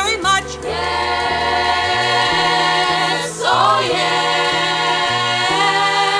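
A school vocal ensemble singing with a jazz band on a 1976 vinyl album recording, ending a song on a long held chord over a moving bass line.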